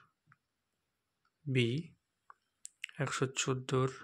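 A man's voice speaking in short bursts: one word about a second and a half in, then a few more words near the end. A couple of small sharp clicks fall in between.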